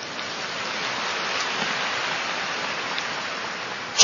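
A large audience applauding, a steady even clapping that cuts off suddenly near the end.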